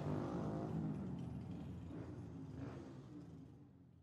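City street traffic with small motorcycles riding past: a low engine rumble that fades out near the end.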